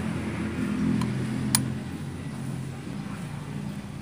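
A low motor-like hum that fades over a few seconds, with one sharp click about one and a half seconds in.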